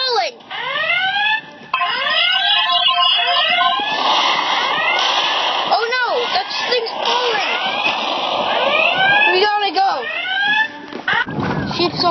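Cartoon space-battle sound effects: a run of laser zaps, each swooping up and down in pitch. From about four seconds in a hissing, explosion-like noise lies under them for several seconds.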